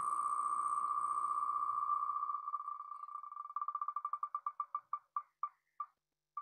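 Wheelofnames.com spinning-wheel ticking sound effect: the ticks come so fast at first that they run together into a steady tone. They then slow evenly into separate ticks, ending about half a second apart as the wheel coasts to a stop on a name.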